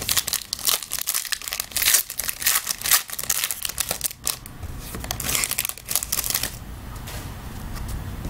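Foil wrapper of a 2016 Playbook Football trading-card pack being torn open and crinkled by hand, a dense crackling that stops near the end.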